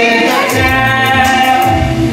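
A song from a stage musical: a long held sung note over instrumental accompaniment with a moving bass line.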